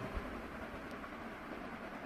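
Faint, steady low rumble with a light hiss: background noise picked up by the microphone once the song has ended.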